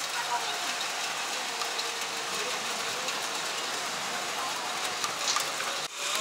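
Steady rain falling, heard through an open window as an even hiss.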